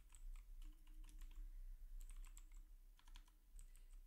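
Faint computer-keyboard typing: scattered keystrokes in several short runs.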